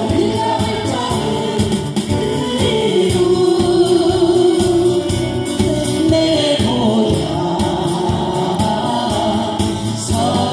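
A group of men and women singing a Korean song together into microphones, with strummed acoustic guitars, amplified through a PA. A long held note comes in the middle of the phrase.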